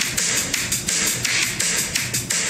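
An excerpt of an 1980s pop-rock song playing, with a steady drum beat.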